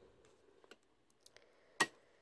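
Faint light ticks and rustles as a hole-punched cardstock page slides onto the metal rings of a ring-bound planner, then one sharp click near the end as the rings close.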